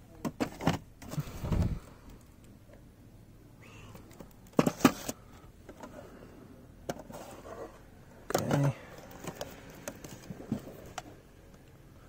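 Boxed model cars in cardboard and plastic display boxes being moved and handled on a shelf: several short bursts of scraping, clicking and rustling, the loudest about five seconds in.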